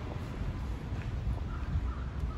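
Wind buffeting a phone microphone outdoors: a steady low rumble.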